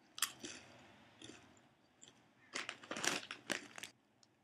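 Crunching bite into a ridged, wavy potato chip, then chewing: one sharp crunch just after the start, a few softer crunches, and a quick run of crunches in the last second and a half.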